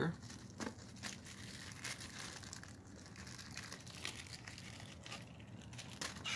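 Aluminium foil crinkling in faint, scattered crackles as hands fold its sides up and pinch the ends into a small tray.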